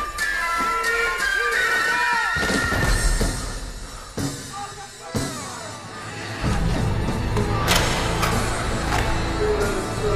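Film soundtrack music with held, gliding melody lines, fading in the middle and coming back fuller and heavier from about six and a half seconds. Sharp hits cut through about five seconds in and again near eight seconds.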